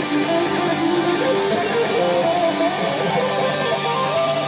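Live hard rock band, with electric guitar playing a melodic line that has some string bends.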